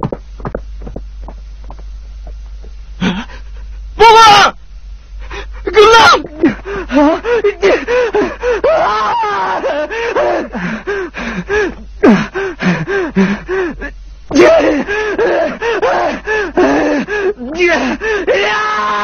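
Quick footsteps on dry ground, then a man's loud anguished cries, breaking from about six seconds in into continuous gasping, sobbing wails.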